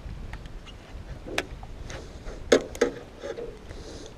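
Handling noise as a largemouth bass is held and a frog lure is worked out of its mouth: a low rumble with faint clicks, and one sharp click about a second and a half in.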